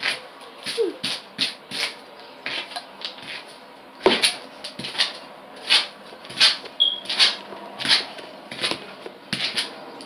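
Brush strokes through a wet synthetic lace wig's long hair, a short swish roughly every 0.7 seconds, with one sharper knock about four seconds in.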